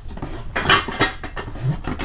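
Metal soda cans knocking and clinking against one another as one is picked up from a group standing together, with a cluster of clicks and scrapes about halfway through and another sharp click at the end.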